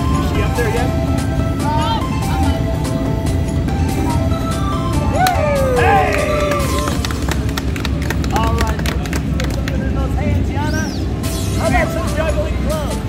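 Background music with steady low bass, mixed with voices of nearby onlookers and short exclamations, with no single clear sound standing out.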